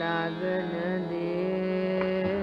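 A female Hindustani classical vocalist sustaining one long sung note in raga Malkauns, bending the pitch slightly, over a steady drone.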